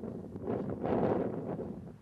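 Wind on the microphone: a low rushing noise that swells about halfway through and fades near the end.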